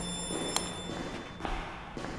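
Electric apartment doorbell ringing: a steady high-pitched ring that stops just under a second in, with a sharp click partway through.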